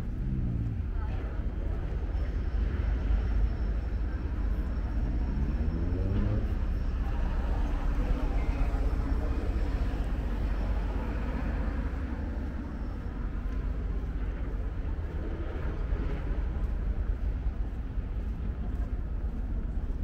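Steady city traffic rumble, with a motor vehicle's engine changing pitch as it passes about four to six seconds in.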